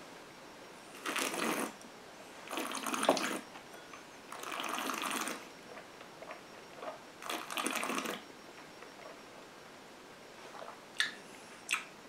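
A mouthful of whisky slurped and swished around the mouth in four short wet bursts, spread over the first eight seconds. Two small clicks come near the end.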